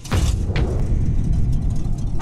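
Logo transition sound effect: a sudden deep boom right at the start that carries on as a steady low rumble.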